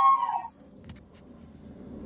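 A long, high-pitched sound from a video playing on a phone's speaker, rising and then held, cuts off about half a second in. After it comes a low hum with two faint clicks.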